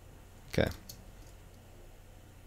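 A faint click at a computer just after a spoken "okay", over a low steady hum.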